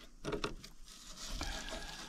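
Fillet knife scoring a carp fillet on a cutting board: faint scraping and crunching as the blade cuts through the fish's bones down to the skin.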